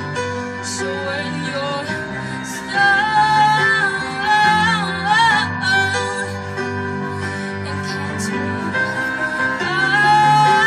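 A young woman singing a slow song with vibrato over instrumental accompaniment. Her voice comes in louder about three seconds in.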